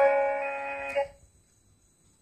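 Google Assistant's synthesized voice singing the held last note of a short song through a small Raspberry Pi-driven speaker. The note fades and ends about a second in.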